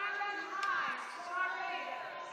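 Indistinct distant voices carrying across a stadium over a steady background murmur.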